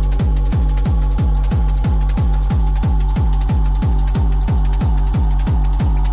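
Hard techno track at 182 bpm: a kick drum pounding about three times a second, each hit a deep falling thud with a long bass tail, under a steady held synth tone.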